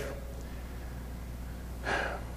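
A man's quick intake of breath through a microphone near the end of a pause in his speech, over a steady low hum.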